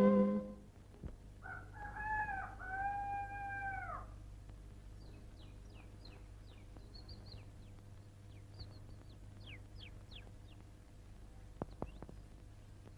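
A rooster crows once, a long cock-a-doodle-doo, followed by small birds chirping in short, quick, high twitters. In this film it is the daybreak cue. The tail of a music cue cuts off at the very start.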